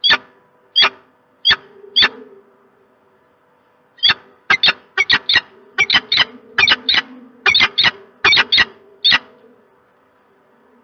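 Peregrine falcon calling close to the microphone: short, sharp calls, a few single ones, then after a pause of about two seconds a quick run of calls in twos and threes.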